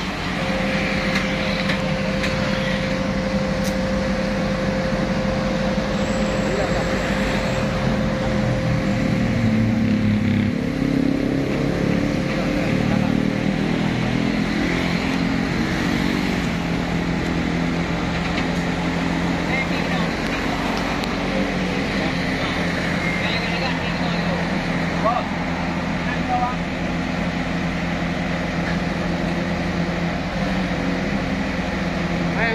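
Truck engine running steadily, its speed shifting and rising briefly around ten seconds in, with a thin steady whine over it for the first dozen seconds.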